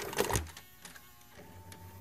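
Channel logo sound effect: a few sharp mechanical clicks and clatter in the first half-second, then a quieter low hum with a thin steady tone joining about a second and a half in.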